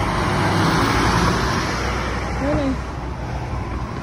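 A city bus driving past close by: engine rumble and tyre noise, strongest in the first couple of seconds and then easing off, over general street traffic.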